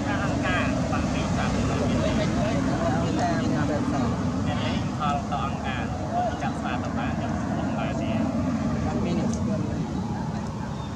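Faint talking voices over a steady low rumble.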